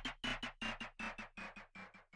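Closing tail of a rap track's electronic backing beat: after the beat drops out, short notes repeat quickly, about six a second, each quieter than the last, fading away.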